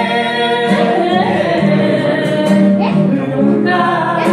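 A woman singing a song, accompanied by an acoustic guitar.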